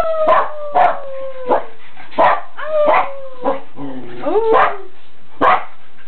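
A woman and her dogs howling together. Long drawn-out howls slide slowly down in pitch, with a shorter rising howl about two-thirds of the way through, over sharp dog barks that come every half second to second.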